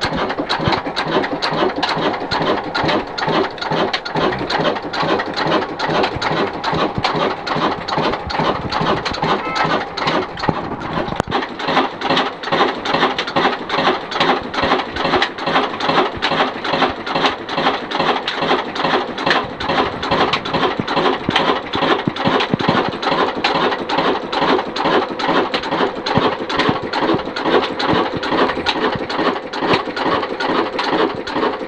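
Ruston Hornsby-type single-cylinder horizontal stationary diesel engine running with a steady, rhythmic mechanical clatter.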